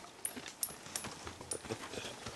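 Faint, irregular clicks and rustles of handling noise as the camera is moved about against clothing.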